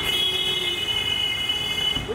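A vehicle horn sounding one steady, high-pitched blast for about two seconds.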